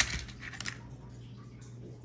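Small insulated crimp terminals clinking and rattling as a hand picks through a plastic organizer compartment: a sharp click at the start, then a few light clicks within the first second.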